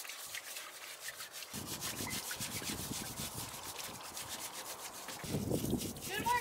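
Hands scrubbing and rubbing a squirrel carcass in a steel pan of water, a quick run of rubbing strokes that starts about a second and a half in and grows louder near the end.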